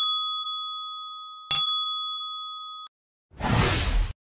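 Two bright electronic ding chimes, about a second and a half apart, each a ringing tone that fades away; near the end a short whoosh.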